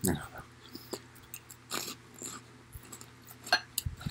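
Quiet eating sounds of a man chewing crunchy pork rinds, with a few soft clicks, then a quick cluster of clicks and rustles near the end as a hand rummages in a glass bowl of pork rinds.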